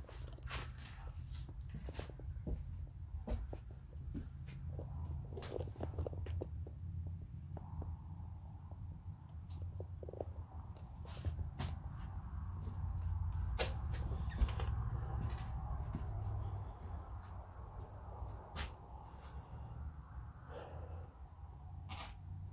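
Low handling rumble with scattered light clicks and knocks from a handheld recording being moved around a room. A faint rushing noise swells in the middle and fades before the end.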